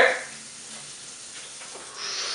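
The tail of a laugh right at the start, then a faint, steady hiss with no distinct event.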